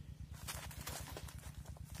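Faint, irregular clicking and rustling, a few light ticks every second, over a low steady rumble.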